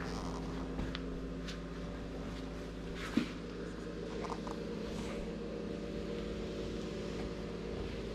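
A steady low mechanical hum with several held tones, like a running fan or motor, with a few faint clicks from handling.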